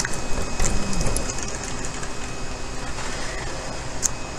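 Steady whirring hum of a dehumidifier running inside a small greenhouse enclosure, with a few faint clicks.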